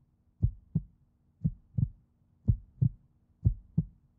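Heartbeat sound effect: four slow lub-dub double thumps, about one a second, over a faint steady low hum.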